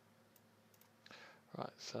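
Quiet room tone with a few faint computer mouse clicks, then a man starts speaking about a second and a half in.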